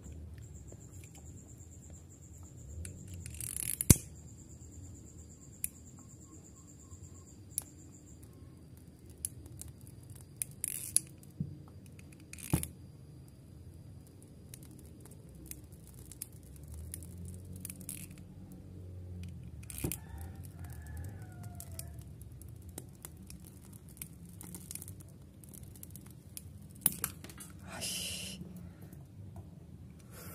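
Handheld lighter being struck several times, each strike a sharp click, the loudest one about four seconds in after a brief hiss. Its flame is held to a microSD card gripped in tweezers, burning the card.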